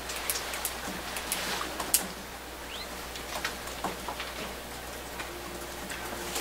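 Quiet room tone with scattered, irregular light clicks and taps, one sharper click about two seconds in.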